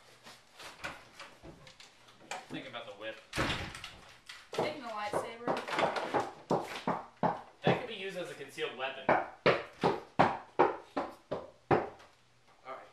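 Indistinct voices talking, then a quick even run of thumps, about three a second, over the last three seconds.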